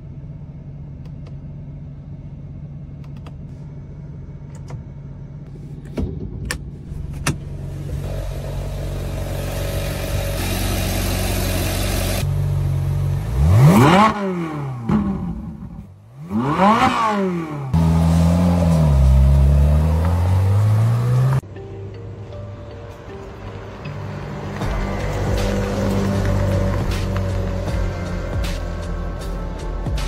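Ferrari 458 Italia's naturally aspirated V8 idling steadily, then revved hard twice in quick succession, the pitch shooting up and dropping back each time, followed by a lower rev that falls away and cuts off suddenly.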